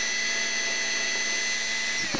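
Cordless drill running at a steady speed with a 1/16-inch bit, boring a pilot hole into a wooden board; an even, unwavering motor whine.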